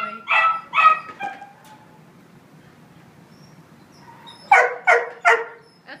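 Dog barking: a couple of short barks in the first second, then a run of three quick barks near the end.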